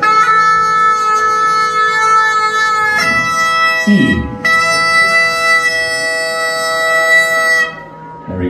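Bagpipe with a single drone playing a steady drone under a held chanter note while the drone is being tuned to the chanter's A. The chanter note changes about three seconds in, the sound breaks briefly around four seconds, then resumes and stops just before the end.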